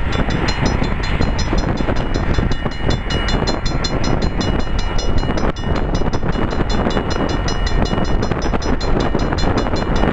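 Wind buffeting the microphone over the sound of a distant approaching train. A rapid, regular high ringing starts right at the beginning and keeps going.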